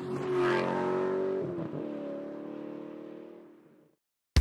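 Car engine sound effect used as a closing logo sting: a short whoosh, then a steady engine note that drops in pitch about one and a half seconds in, like a car passing, and fades away near the end.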